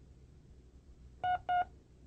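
Two short, identical electronic beeps about a third of a second apart, in the second half: the tape's signal that an answering (discrimination) drill follows.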